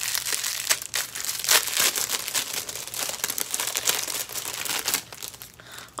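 Small packaging wrapper crinkling and crackling as it is handled and opened by hand, dense crackles that thin out about five seconds in.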